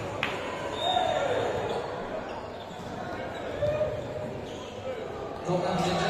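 A volleyball being struck and bouncing on the hard court floor, a couple of sharp smacks near the start, over players' voices calling out, all echoing in a large sports hall.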